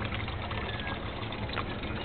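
Steady low hum with trickling water from a garden goldfish pond's pump.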